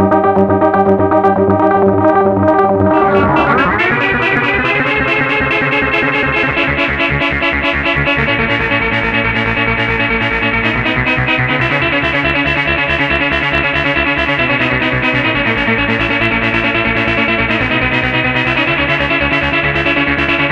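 PAiA Fat Man analog synthesizer played through the Powertran digital delay line, holding a dense sustained chord. About three seconds in, the whole sound sweeps upward in pitch and settles into a brighter texture with a fast, even pulsing that runs on.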